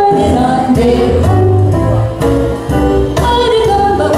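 Live duo on Yamaha electronic keyboard and electric guitar playing a jazz standard, with singing over the accompaniment and a steady bass line.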